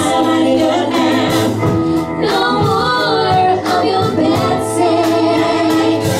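Live pop-song medley: several voices singing together over ukulele, upright bass and drums.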